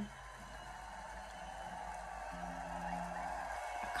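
Faint audio of a live festival performance at low volume: a steady hiss that swells slightly, with a low note held for about a second in the middle.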